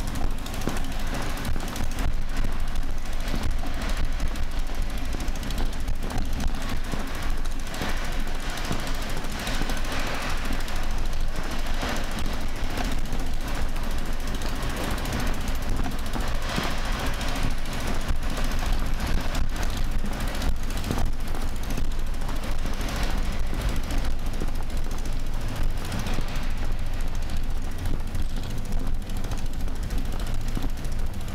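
A bicycle being pushed along paving, with a steady rapid rattling and a low rumble from the bike and its rolling wheels.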